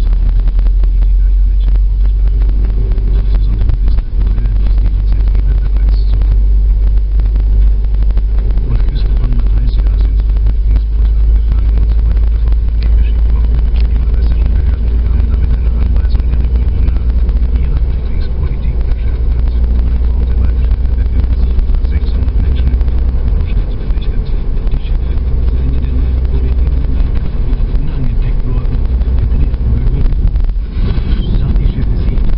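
Car driving through town, heard from inside the cabin: a steady, loud low rumble of engine and road noise.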